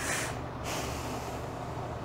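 A breath drawn in, close on a clip-on microphone, lasting about half a second at the start, followed by a steady low room hum.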